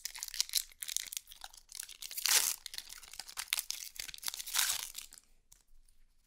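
Foil wrapper of a Magic: The Gathering booster pack being torn open and crinkled by hand: a dense crackling, with two louder crinkles about two and a half and four and a half seconds in, dying away near the end.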